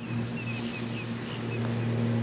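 Hushed outdoor ambience: a steady low hum, with a bird giving a quick run of short, high chirps in the first second or so.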